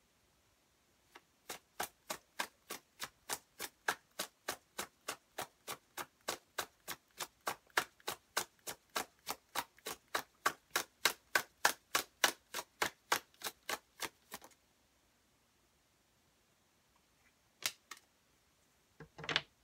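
Tarot deck being shuffled by hand: a steady run of crisp card clicks, about three or four a second, that stops a few seconds before the end, followed by a single click near the end.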